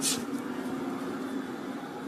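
Ambience of an arena with no crowd: a steady low hum, with one short sharp sound right at the start.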